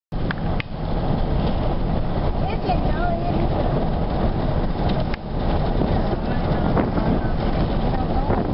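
Steady road noise from inside a moving car: a low rumble of tyres on pavement and air rushing past.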